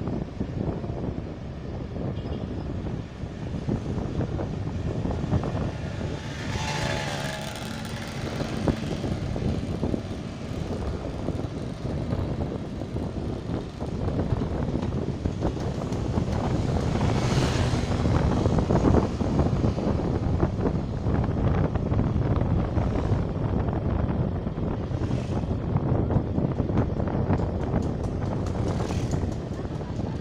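Motorcycle riding along a road: steady engine and road noise mixed with wind buffeting the microphone, with a couple of brief louder swells about seven and seventeen seconds in.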